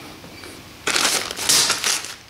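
A clear plastic bag of small metal parts crinkling as a hand grabs and presses it on a workbench, a loud rustle lasting about a second from just under a second in.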